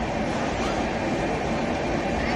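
Passenger express train rolling slowly out of a station, heard from a coach doorway: a steady rumble of wheels on rails.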